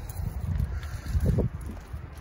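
Wind buffeting the microphone in gusts: a low rumble that swells about half a second in and again, more strongly, just past a second in.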